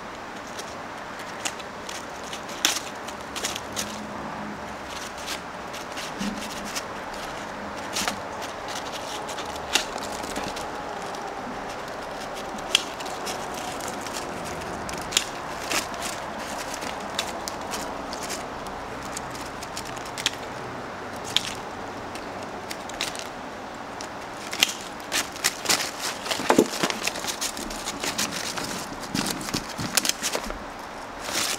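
Bonsai pruning scissors snipping twigs of a Lebanon cedar: scattered sharp clicks at irregular intervals, coming more quickly near the end.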